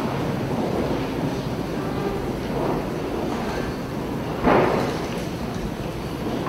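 Steady low rumble and rustle of a church's room noise, with one short, louder rustle or thump about four and a half seconds in.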